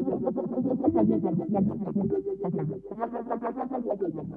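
Minimal deep tech from a DJ mix: a choppy synthesizer pattern of short, rapidly repeating notes run through effects, dipping briefly about three seconds in.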